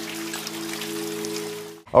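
A held low musical chord with the hiss of steady rain falling on a table and teacup, cutting off suddenly near the end.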